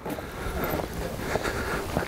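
Steady rushing noise of wind on the microphone.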